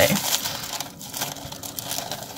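Crinkling and rustling of plastic gift wrapping handled up close as hands untie a ribbon bow, with small irregular crackles.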